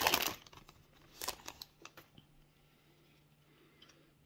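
Foil wrapper of a 2021 Panini Diamond Kings card pack crinkling as it is torn open, loudest right at the start. A few faint rustles and ticks follow about a second in as the cards are handled.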